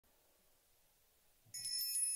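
Silence, then about one and a half seconds in a bright, high-pitched chiming starts: several steady high ringing tones with quick repeated strikes, the opening of added background music.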